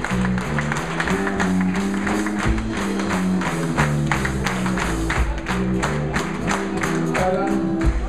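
Live blues band playing a shuffle: an electric bass walks note by note up front over a steady drum beat and guitar. A harmonica comes in near the end.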